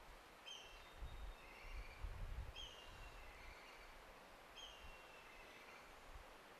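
Near silence with a faint bird call repeated three times, about two seconds apart, each a short high note that slides down in pitch. A soft low rumble comes between about one and two and a half seconds in.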